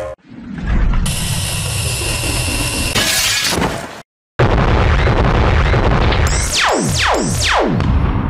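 Cartoon battle sound effects: a long rushing blast that cuts off suddenly about four seconds in, then a second blast with three falling whistles close together as an explosion hits.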